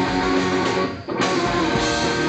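Live punk rock band playing loudly, electric guitar to the fore over drums; the sound cuts out for a moment about a second in, then comes straight back.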